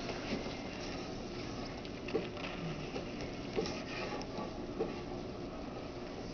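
Quiet room tone with a few faint, scattered clicks and ticks.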